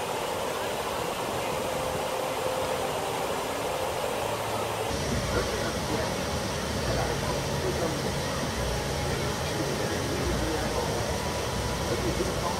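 Outdoor ambience: a steady rush of water falling over a cascade into a pond, with indistinct voices of people around. About five seconds in the sound shifts and a low rumble comes up.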